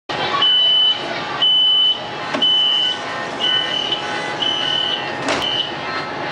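A metro train's door-closing warning beeper: a high, steady beep about once a second, six times, while the doors close. There is a sharp knock about two seconds in and another near the end as the doors shut.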